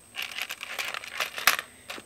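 Metal keychain hardware (split key ring, clasp and small charms) clinking and rattling as fingers handle it, with one sharper click about one and a half seconds in.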